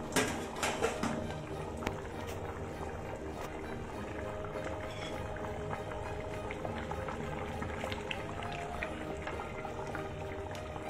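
Mutton curry simmering in a steel pot, stirred with a metal ladle that clicks against the pot a few times in the first second, under faint background music with long held notes.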